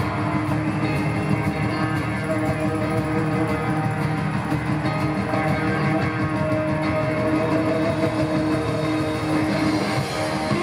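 Live rock band playing an instrumental passage over an arena PA: electric guitars, drums and keyboard in a steady, full mix with no vocals.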